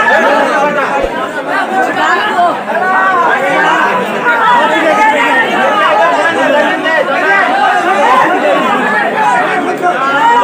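Many voices talking and calling out at once, loud and continuous: the crowd of kabaddi spectators and players.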